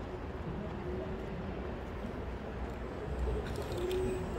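Open-air city ambience: a steady low rumble with faint distant sounds and a few small clicks near the end.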